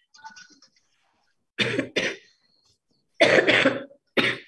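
A woman coughing into her hand and a tissue over a videoconference line: two bouts of two coughs each, about a second and a half apart.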